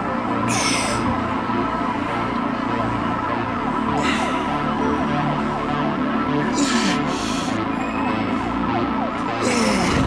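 Background music: sustained synth tones with short sliding notes and a brief swoosh now and then.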